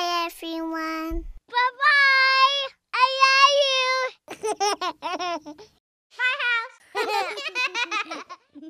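High-pitched cartoon character voices babbling and giggling without words: a few held sing-song calls, then quicker warbling ones.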